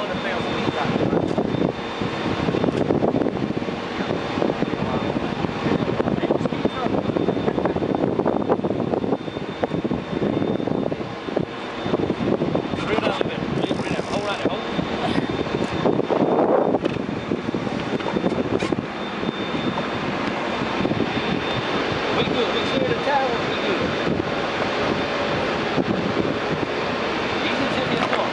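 A boat's engine running steadily, with indistinct voices over it.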